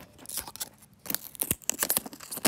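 Metal shears cutting a DVD into pieces: scattered sharp cracks and snaps of the plastic disc breaking, with a short lull before the middle and several cracks close together near the end.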